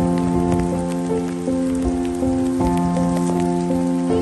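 Slow music of sustained chords, changing every second or so, over the steady patter of a hailstorm, with scattered sharp ticks.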